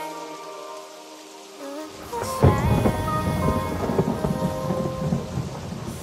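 Outro of an R&B song: held tones fade, then about two seconds in a rumble of thunder sets in with a sharp crack and carries on with rain, while the tones keep sounding above it.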